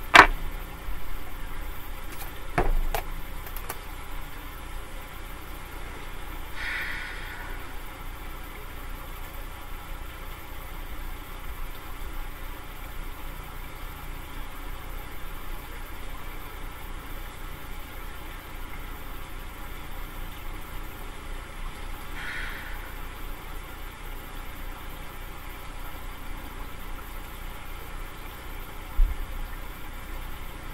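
Steady low machine-like hum of background room noise, with a sharp click at the start and another about three seconds in. Two faint hisses come in the middle and a soft thump near the end.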